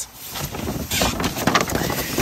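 Irregular rustling and crackling close to the microphone, with no voice: fabric or camera-handling noise.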